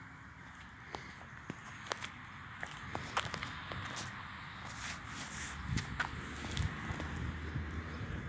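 Footsteps on a concrete path: a string of light, sharp steps and scuffs about every half second, with a few duller knocks near the end.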